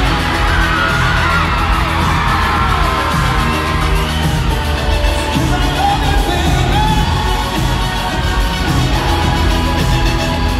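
A live band plays a loud instrumental passage, with drums and bass, while the arena crowd screams and whoops over the music.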